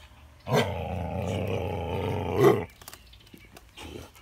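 Belgian Malinois growling: one low growl of about two seconds, starting about half a second in and swelling just before it stops.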